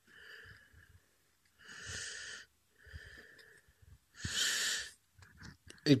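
A person breathing close to the microphone, in a series of about four breaths roughly a second apart. The louder breaths come about two and four and a half seconds in.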